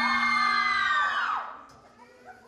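Several voices holding a long, high-pitched shout over a steady low tone. The shout rises, holds, then drops away about a second and a half in, leaving the set quiet.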